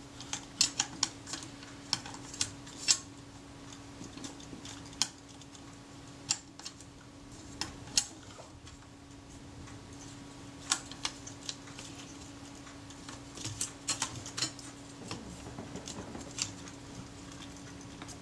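Irregular sharp clicks and light metallic clinks of the sheet-metal front plate and parts of a Rolleiflex Automat TLR camera body being handled and worked loose by hand. The clicks come in clusters, over a faint steady hum.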